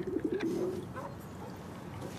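A pigeon cooing: a short, low warbling call near the start, then only faint outdoor background.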